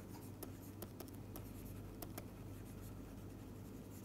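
Faint tapping and scratching of a stylus writing on a digital pen tablet, in scattered small clicks over a low steady hum.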